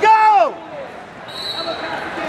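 A spectator's loud shout, dropping in pitch over about half a second, rings out through the gym's crowd noise at the start. Near the end a faint, steady high tone sounds.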